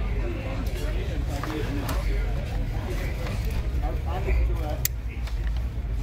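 Racing seat-harness straps and buckle being handled, with a sharp click near the end, over a steady low rumble and faint voices.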